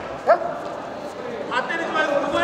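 Short, sharp shouts in a taekwondo sparring bout, the referee's command and the fighters' yells as the round restarts: one brief loud call just after the start and several more near the end.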